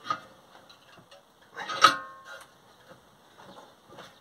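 Bench vise being tightened on a sheet-metal blank, with a few light clicks and, about two seconds in, one sharp metallic clank that rings briefly.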